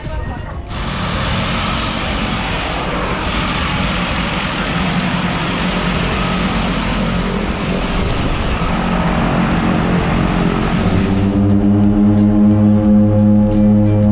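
A turboprop jump plane's engines run as a loud, steady rush with a faint high whine. About eleven seconds in, this gives way to a deep, steady propeller drone that pulses slightly, as heard from close by or inside the plane.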